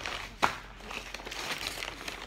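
Brown paper takeout bag rustling and crinkling as a hand rummages inside it, with one sharp crackle about half a second in.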